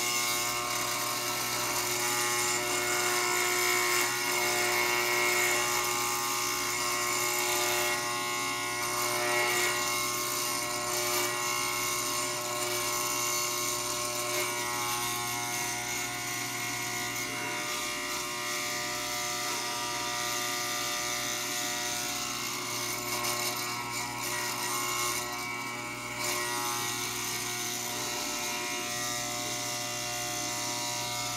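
Corded Wahl electric hair clippers running with a steady buzz while they cut off long sideburn hair.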